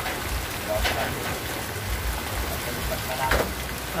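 Steady rain falling, an even hiss throughout.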